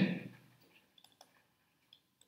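A few faint, scattered clicks of a stylus on a pen tablet while handwriting, over near-silent room tone.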